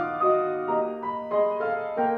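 Fazioli grand piano played solo: a flowing line of single notes over held lower notes, a new note struck about every third of a second.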